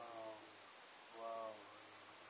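Cheetah making two faint, short pitched sounds about a second apart.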